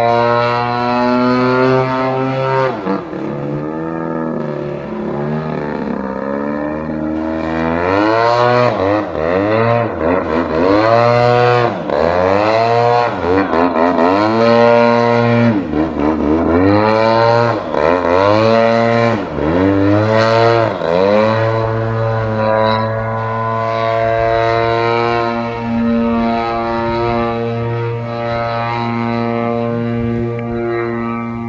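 Engine and propeller of an Extreme Flight 85" Extra 300 EXP aerobatic model plane, running at a steady pitch at first. From about a quarter of the way in, the pitch rises and falls over and over, about every two seconds, as the throttle and the plane's passes change. It settles back to a steady note for the last third.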